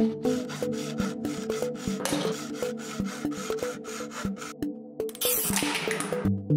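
A utility-knife blade scraping and cutting through a thin aluminium drink can, a rasping sound that is loudest about two seconds in and again near the end. Electronic background music with a steady beat runs underneath.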